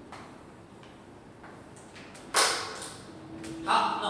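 Faint chalk taps and scratches on a blackboard, then one sharp knock a little over two seconds in.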